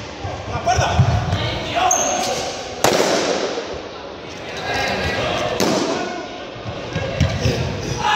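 Two balloons bursting with sharp pops, about three seconds in and again about five and a half seconds in, ringing in a large reverberant sports hall, over people's voices and shouts.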